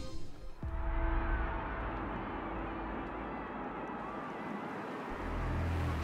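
A quiet, steady ambient soundtrack bed, a hazy hiss with a few faint held tones, with a low rumble swelling in about five seconds in.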